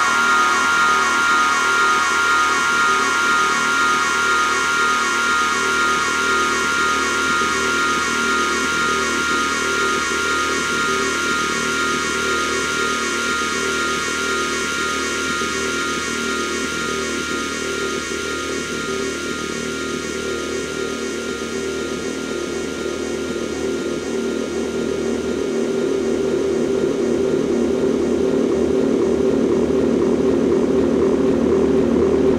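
Dark electronic drone music played live: dense sustained tones with no beat. A bright upper cluster near the start thins out and a lower band swells toward the end, the whole getting a little quieter midway and louder again at the close.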